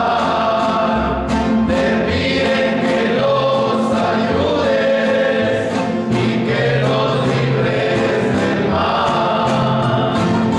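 Several male voices singing a hymn in harmony, accompanied by strummed nylon-string acoustic guitars.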